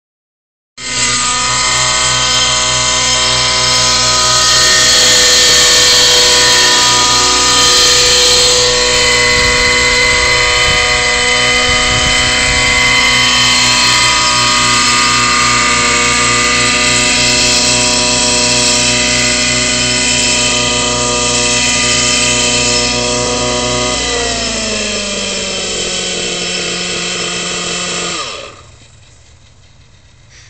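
Engine of a radio-controlled model helicopter running steadily with the rotor. Near the end the pitch drops as it is throttled down, and then it cuts off.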